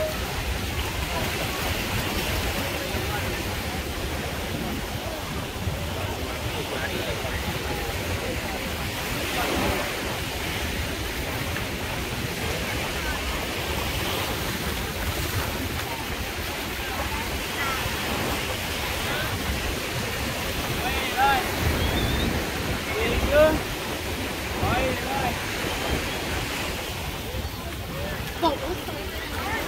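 Crowded beach ambience: small waves washing in at the water's edge and wind on the microphone under the mixed chatter of many beachgoers. Clearer, higher voices stand out about three-quarters of the way through.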